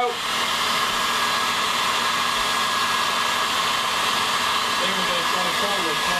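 Handheld hairdryer running steadily, blowing hot air down onto the sugar topping of a crème brûlée.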